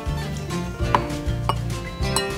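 Background music with sustained notes. Two sharp clicks come through it, about a second and a second and a half in, from a metal tablespoon knocking against a glass mixing bowl.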